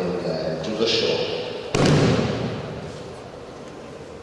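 A voice talking in a large hall, then a single loud thud a little before halfway that echoes through the hall and dies away.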